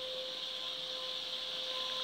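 Steady background hiss with a faint, constant hum underneath: room tone with no distinct sound event.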